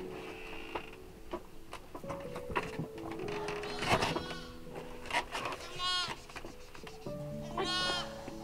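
Background music with a slow melody of held notes. A brief sharp noise comes about four seconds in, and animals of a goat and sheep flock bleat twice: once about six seconds in and again near the end.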